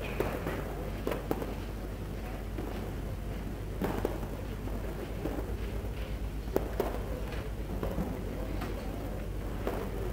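Ambience of an outdoor tennis court between points: a steady low background rumble with a few scattered soft knocks and clicks.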